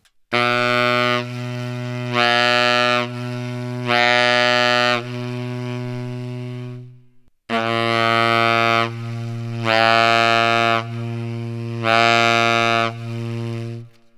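Tenor saxophone holding a low note twice, each for about seven seconds with a short breath between. Within each note it switches about once a second between a bright, louder full tone and a softer, darker subtone. This is the full-tone-to-subtone practice exercise on the bottom notes of the horn.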